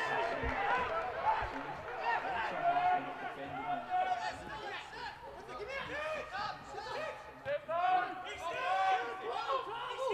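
Footballers on the pitch shouting and calling to each other during open play, in many short, overlapping calls.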